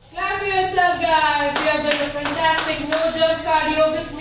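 Background workout music: a sung melody with long held notes over handclaps that strike about twice a second.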